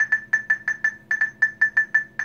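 Zebra MC9190-Z RFID handheld scanner giving quick Geiger-style beeps, about six short beeps a second on one pitch. The TracerPlus Geiger feature makes these beeps to signal that the tagged item is within range.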